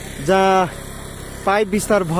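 A man's voice speaking in short phrases over a steady engine running in the background, its low hum continuous between the words.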